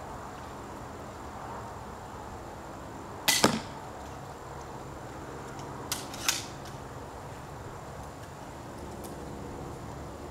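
An 80 lb pistol crossbow shot: a sharp snap followed a split second later by the bolt striking the archery target, about three seconds in. A second, quieter pair of sharp knocks comes about six seconds in.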